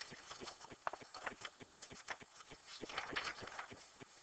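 Plastic transparency sheet being lifted off and a fresh sheet laid down, crackling and rustling, loudest about three seconds in, among a run of light clicks from the sheets and hands.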